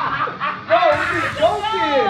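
Several people laughing and shouting excitedly, loud voices swooping up and down in pitch, starting about half a second in.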